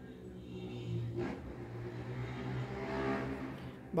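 A motor vehicle's engine hum, growing louder to a peak about three seconds in and then easing off.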